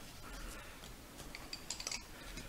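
Wooden pencils being handled, giving a few faint clicks as they knock against each other, mostly in a small cluster near the end.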